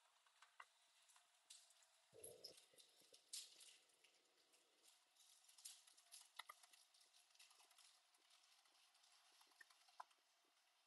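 Faint laptop keyboard keystrokes, scattered irregular clicks, with a soft low thump about two seconds in.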